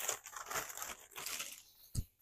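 A plastic poly mailer crinkling and rustling as it is handled and crumpled up, with one sharp tap at the very end.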